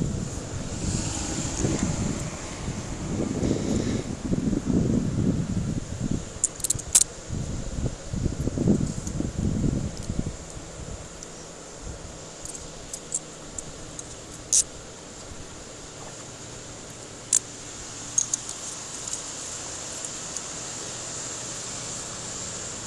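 Car traffic passing close by on the street, a loud wavering rumble over the first ten seconds or so that settles into a quieter, steady outdoor hum. A few short, sharp clicks sound over it, three of them stand out, from jostled keys or gear on a body-worn camera.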